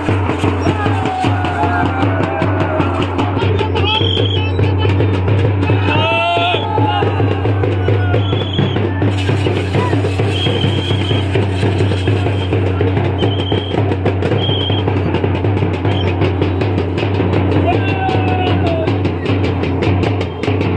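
Loud, continuous festival drumming on large stick-beaten drums, with crowd voices shouting over it. Short, high, steady whistle-like tones sound several times.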